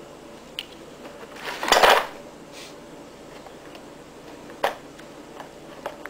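Kittens rooting in a cardboard box of brass .22 rimfire cartridges: scattered light metallic clicks as the loose cartridges knock together. About a second and a half in there is a loud rustling scrape lasting about half a second, and a single sharper click comes near five seconds.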